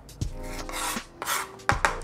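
Kitchen knife cutting through a rocoto pepper on a plastic cutting board: rasping slicing strokes with light knocks of the blade against the board.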